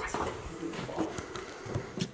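Footsteps on bare hardwood floorboards: several irregular knocks.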